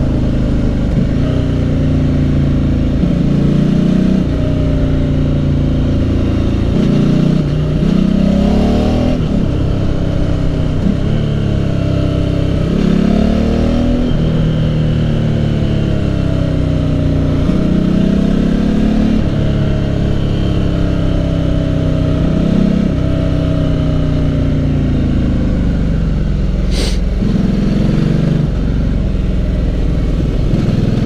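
Ducati motorcycle's V-twin engine heard from on board, its pitch repeatedly climbing under acceleration and falling back as the throttle is rolled off, with wind noise on the microphone. A single sharp click about three seconds before the end.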